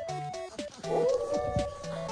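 A wolfdog puppy gives one drawn-out, howl-like cry about a second in that falls away at its end, over background music of short plucked notes.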